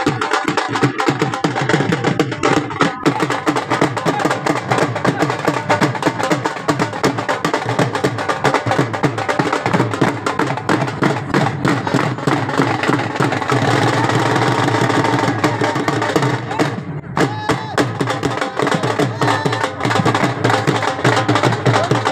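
Several dhol drums beaten together in a fast, driving bhangra rhythm, with dense sharp stick strokes. The drumming briefly drops away about seventeen seconds in.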